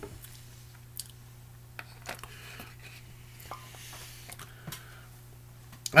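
Scattered faint lip smacks and mouth clicks of a man tasting a mouthful of fruit drink, over a steady low hum.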